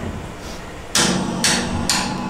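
Rock band coming in live: after a quieter first second, drums and electric guitar strike together, three sharp accented hits about half a second apart over a ringing chord.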